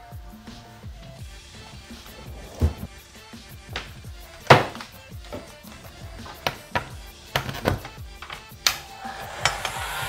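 Knocks and clatter as a Bosch heat gun and its cord are handled on a workbench, over quiet background music. Near the end a steady blowing starts as the heat gun is switched on.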